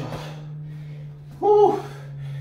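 A man's single brief vocal exhale of effort about one and a half seconds in, at the end of the last push-up rep, over a steady low hum.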